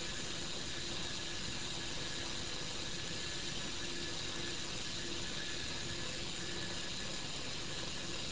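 Steady running of the motor-driven magnetometer probe carriage as it travels along its rail, under a constant hiss.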